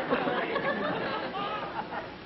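Studio audience laughing, many voices at once, dying away toward the end.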